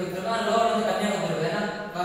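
A man's voice speaking continuously, explaining; only speech.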